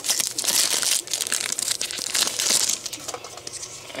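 Foil booster-pack wrapper of a Pokémon trading card pack crinkling as it is torn open and handled, loudest for the first two and a half seconds, then softer.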